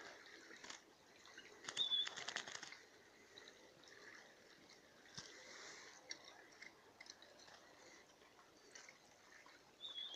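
A European goldfinch fluttering its wings in a quick burst of flaps about two seconds in, with a short high chirp at the same time and another near the end; otherwise only faint rustling.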